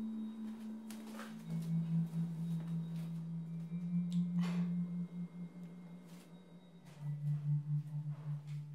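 Background music of low, steady held notes that step down in pitch twice, with a few faint clicks and knocks.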